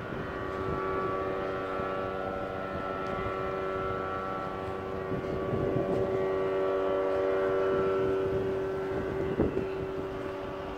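A steady engine drone with several held tones, swelling a little louder in the second half, with a short bump near the end.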